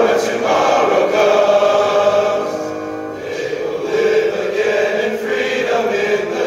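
Large male choir singing held chords, with piano accompaniment; the sound thins briefly about halfway through, then swells again.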